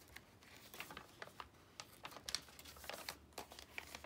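Faint, irregular rustles and light taps of paper and cardstock tags being handled and slid out of a journal pocket.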